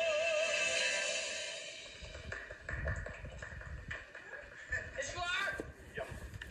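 A male singer's long held note with wide vibrato, fading out over the first couple of seconds. Then a quieter stretch of scattered knocks, low noise and brief voices.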